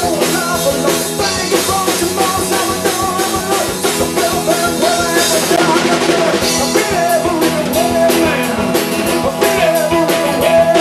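Live rock band playing: strummed acoustic guitar and electric guitar over a drum beat, with a voice singing along.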